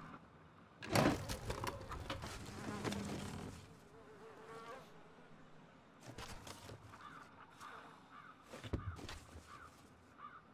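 A sharp clatter about a second in, then a small creature's wavering chirps and buzzing squeaks, with a few scattered knocks later.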